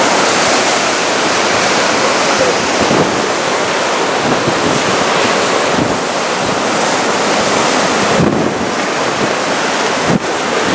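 Rough sea surf and strong wind in a steady, loud rush of noise, with the wind buffeting the microphone.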